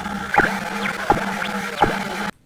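Electronic intro jingle: a steady low drone with a sharp, bright hit about every 0.7 seconds, three hits in all.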